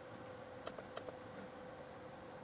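A few faint clicks from computer input, about three close together around a second in, over a faint steady hum.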